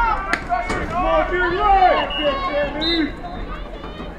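Several voices calling and shouting across an outdoor soccer field, the words not clear, with a few sharp knocks within the first second.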